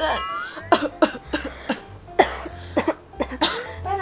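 Several put-on coughs from a girl feigning illness, each a short sharp burst a fraction of a second long, spread across a few seconds.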